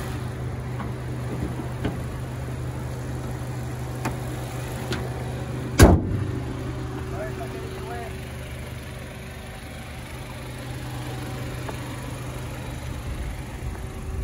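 The Mazda3's SkyActiv petrol engine idling steadily and smoothly, with a single loud thump about six seconds in.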